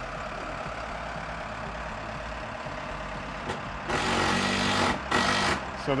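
Diesel engine of an all-terrain telehandler forklift idling steadily. About two-thirds of the way through comes a louder rushing noise lasting about a second and a half, with a short break in it.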